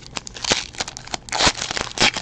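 Trading-card pack wrapper being torn open and peeled back by hand: a run of crinkles, crackles and small rips, with louder bursts about half a second and a second and a half in.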